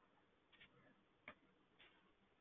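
Faint computer keyboard keystrokes: a few scattered, isolated key clicks as characters are typed and deleted.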